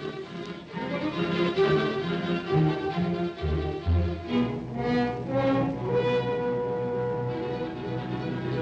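Orchestral music with strings, with a loud low note about halfway through and a single note held steadily near the end.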